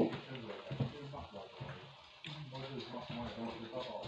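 Quieter speech: a person talking in a room, with no other clear sound beside it.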